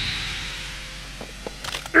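Anime fight sound effects: a rush of movement dies away, then a few sharp clicks near the end.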